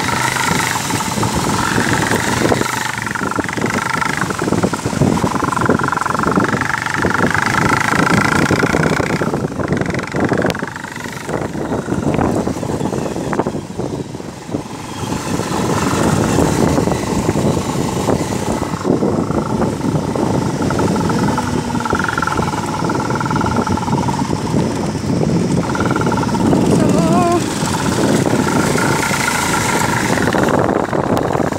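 Motorcycle engine running as the bike rides over a rough gravel and dirt track, heard from on board, with constant knocks and rattles from the bumpy surface and wind on the microphone.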